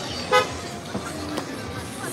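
A single short car horn toot, loud and brief, over the steady noise of a busy street.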